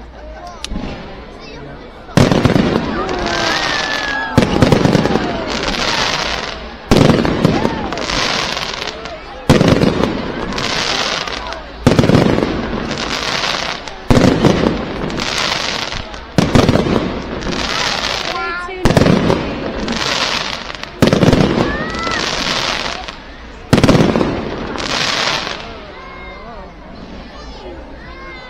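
Aerial fireworks display: about ten loud bangs going off roughly every two to two and a half seconds, each trailing off over a couple of seconds before the next.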